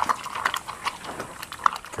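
A bear eating thick grain porridge from a trough: irregular wet smacking and chewing clicks.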